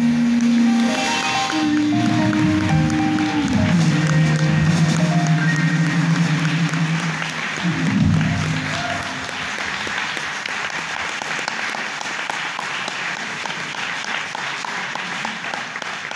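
A jazz quartet of male voice, grand piano, double bass and drums closes a song on long held notes. About nine seconds in, the music gives way to audience applause that continues to the end.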